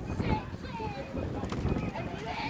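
Indistinct shouting from people on the riverbank, over an uneven clatter of knocks from the camera being jolted along the towpath at a run.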